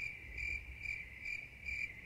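Cricket-chirping sound effect: a high, steady trill pulsing about two or three times a second. It is the stock 'crickets' gag that marks an awkward silence.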